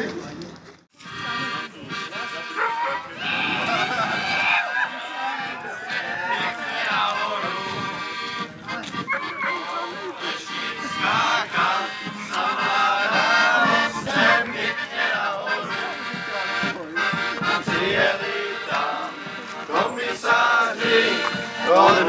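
Accordion music playing, with people's voices over it; the sound drops out briefly about a second in.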